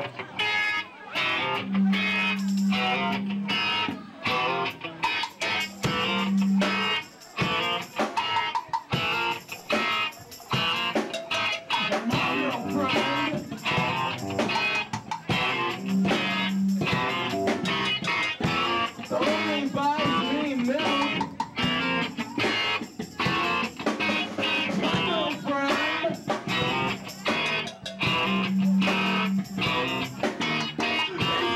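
A live rock band playing a song, led by electric guitar, with a regular beat of hits throughout and a low note that returns every few seconds.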